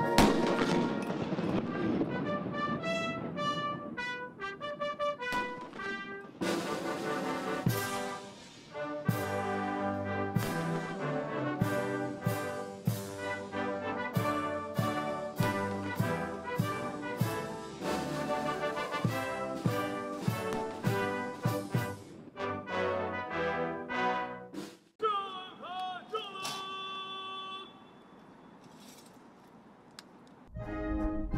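Military brass band playing a national anthem, opening with a loud bang from the salute guns and with sharp cracks cutting through the music. The music fades out a few seconds before the end.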